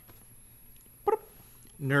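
A dog gives a short bark about a second in, picked up on a host's microphone; speech begins near the end.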